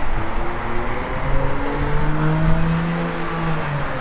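A motor vehicle's engine running, a steady hum whose pitch holds for a few seconds and then eases off near the end, over a low rumble.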